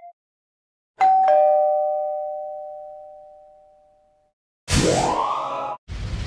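A two-note descending 'ding-dong' doorbell-style chime sound effect, fading out over about three seconds. Near the end comes a short whooshing sweep with a rising tone.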